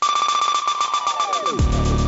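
Electronic opening theme music starting up: a pulsing beat with a steady high tone and a pitch sweep that falls into a heavy bass about one and a half seconds in.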